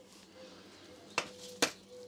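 Two short, sharp clicks of hand tools being handled, a little under half a second apart in the second half, over a faint steady hum.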